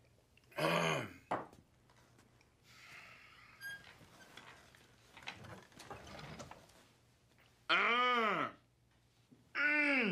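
A man's wordless throat noises after a drink of water: a short falling grunt about half a second in, then two longer vocal noises near the end that rise and fall in pitch.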